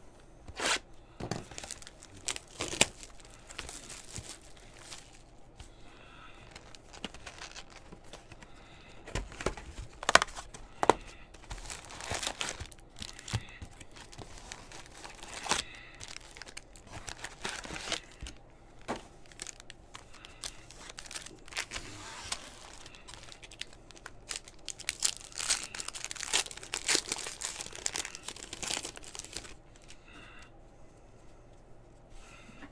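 Tearing and crinkling as a Panini Donruss basketball hobby box is unsealed and its foil card packs are handled and ripped open: an irregular run of sharp rips and crinkles, busiest near the end.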